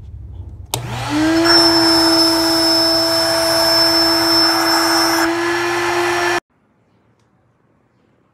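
Built-in electric air pump of a King Koil queen air bed switched on with a click, spinning up quickly to a steady hum as it blows air, then cutting off suddenly about five and a half seconds later.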